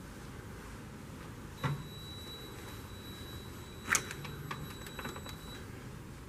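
A steady high-pitched electronic beep, held for about four seconds before cutting off, with a sharp click about two seconds into it, over a low room hum.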